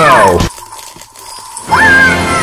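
A cartoon voice's drawn-out cry of "no!" falls in pitch and cuts off suddenly about half a second in. A quieter stretch follows with a faint steady tone, then a loud high cry rises and holds near the end.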